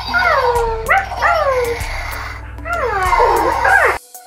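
Battery-powered plush walking unicorn toy playing its electronic animal sounds: a run of short calls, each sliding down in pitch, over a steady low hum.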